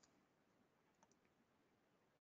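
Near silence: faint line hiss in a webinar audio feed.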